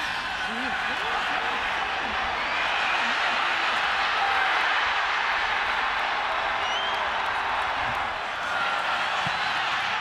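Stadium crowd cheering: a steady roar of many voices, rising slightly in the middle.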